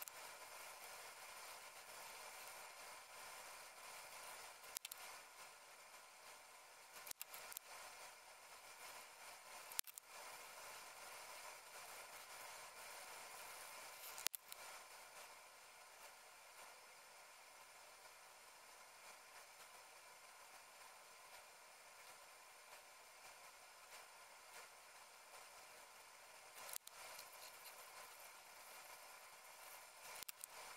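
Near silence: faint steady hiss with a few soft, isolated clicks.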